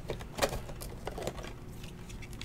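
Light clicks and taps of a trading card in a rigid clear plastic holder being handled, several small irregular knocks within a couple of seconds.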